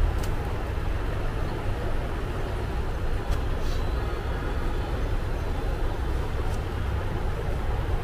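Steady low rumble and hiss of background noise with no single clear source, the ambient din of a busy hall, with a few faint clicks.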